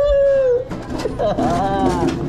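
A man's drawn-out, high-pitched howl-like vocal call: one held note that sags slightly, then a second wail that rises and falls near the end.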